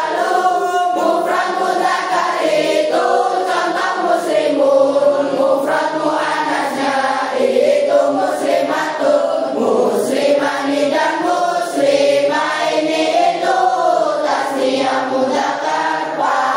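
A class of young boys and girls singing an Arabic grammar (nahwu) verse, a nadzom, together as a group, one continuous chanted melody.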